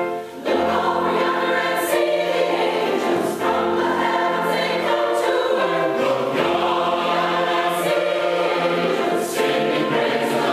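Large mixed choir of men's and women's voices singing in harmony, with a brief break between phrases just after the start.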